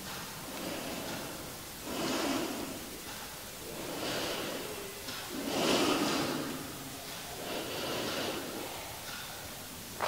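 A woman breathing steadily, several soft in-and-out breaths a second or two apart, while holding a yoga pose.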